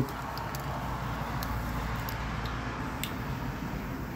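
A lighter's flame held to the tip of a sparkler that has not yet caught: a steady rushing hiss over a low rumble, with a few faint clicks.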